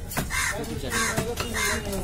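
A crow cawing three times, about half a second apart, over sharp knife chops on a wooden block as pomfret is cut.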